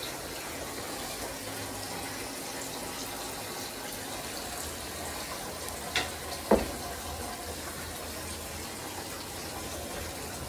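A steady rushing noise, with two sharp knocks about six seconds in, half a second apart.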